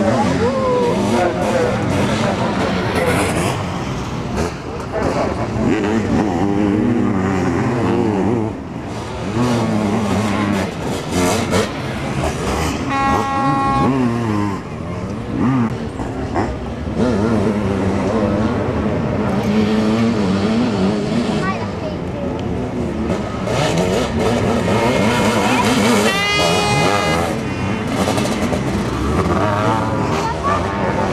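Sidecar motocross outfits racing, their engines revving up and down in pitch as they accelerate and pass, with several machines heard at once. A short steady tone sounds about halfway through.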